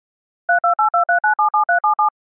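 A rapid string of touch-tone telephone keypad beeps (DTMF dialling), about seven a second, starting about half a second in, each beep a different two-tone pair as a number is keyed in.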